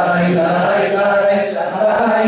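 A solo man singing an improvised Basque verse (bertso) unaccompanied into a microphone, in long held notes.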